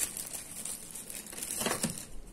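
Thin plastic bag crinkling as hands handle and set down a thermos wrapped in it, an irregular crackle that picks up a little near the end.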